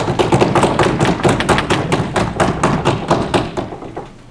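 Small audience applauding: a fast, uneven run of sharp claps that builds, holds, and dies away just before the end.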